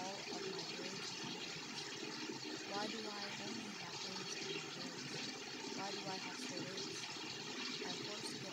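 Layered spoken affirmations, several voice tracks overlapping so the words blur together, under a steady rushing noise.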